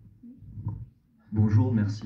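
A man starts speaking about a second and a half in, loud and close as if into a microphone, after a second of faint low rumble.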